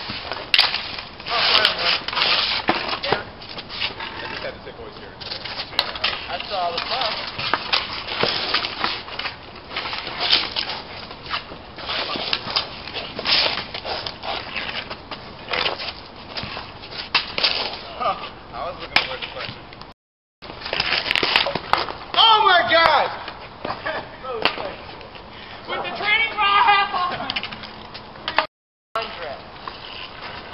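Street hockey sticks clacking and scraping on pavement, with sharp hits during play and players shouting, two louder shouts about two-thirds of the way through.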